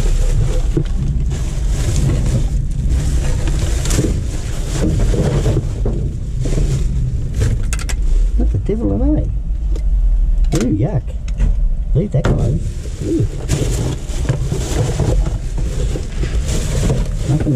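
Plastic garbage bags rustling and crinkling as rubbish is pulled about and sorted by hand, over a steady low rumble. A voice murmurs briefly a little past the middle.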